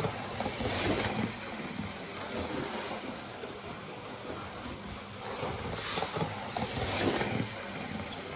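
OO gauge Class 73 model locomotive running on the layout track: a steady whirring hiss of its small electric motor and wheels on the rails, louder about a second in and again near the end as it runs past.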